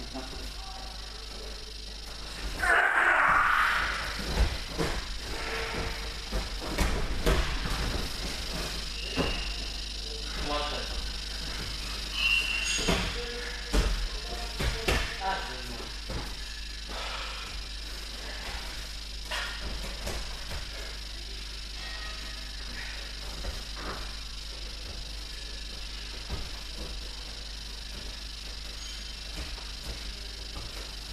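Two fighters sparring on gym mats: scuffling and a run of thuds and knocks, busiest in the first half, with indistinct voices. A loud burst comes about three seconds in.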